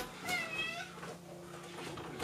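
A house cat meows once near the start, a single short call that rises and falls in pitch.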